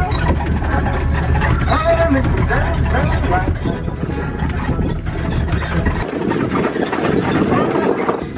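A small farm ride train running along, a steady low rumble of the moving cars, with a young child's voice over it. About six seconds in the low rumble stops abruptly and a rushing noise carries on.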